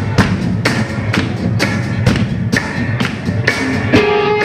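Live rock band's drum kit playing a steady beat, about two hits a second, over a low amplified rumble.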